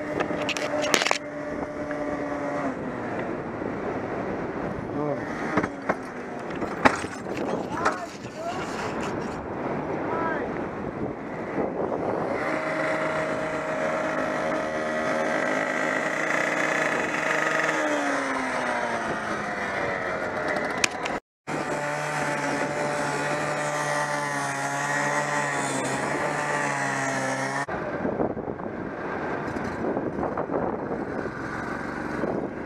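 Small gasoline engine running at a steady high speed, its pitch dropping once partway through and the engine stopping near the end. A few sharp knocks in the first several seconds.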